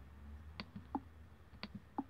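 Faint clicks of a computer mouse being clicked, several short sharp clicks spread over two seconds as the user navigates back through the app.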